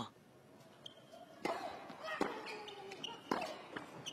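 Tennis ball struck back and forth by racket strings during a baseline rally on a hard court: three or four sharp hits about a second apart, with the stadium's low background murmur between them.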